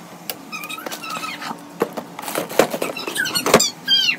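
Snack packets and a plastic storage bin being handled and set into a kitchen cabinet: scattered knocks, clicks and packaging rustle. Short, high squeaky sounds come near the end.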